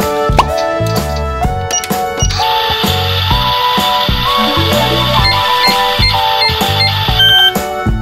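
Children's background music with a steady beat. From about two seconds in until about seven seconds in, an electronic hiss with short repeated beeps plays over it, ending in a brief higher tone.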